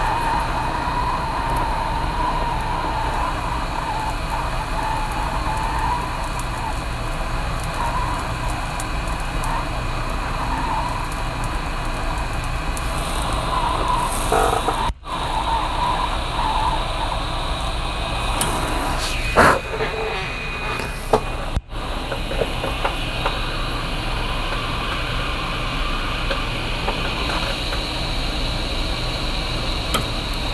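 Hot-air rework station blowing steadily on the PS5 motherboard's HDMI port to melt its solder for removal: an even rushing of air over a low hum. The sound cuts out briefly twice near the middle, with a few light clicks between.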